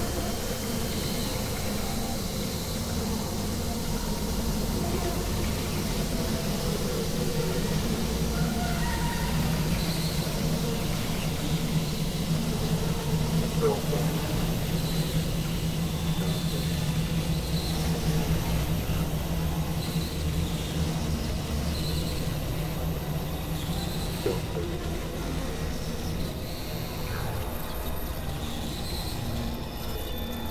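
Dense experimental drone-and-noise mix of several music tracks layered over each other and processed: a steady low hum under a wash of noise, with small high pips recurring every second or two and faint voice-like sounds buried in it.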